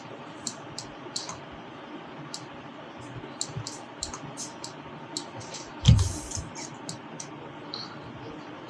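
Sparse, irregular clicks of a computer mouse and keyboard over a steady background hiss. One louder, duller noise comes about six seconds in.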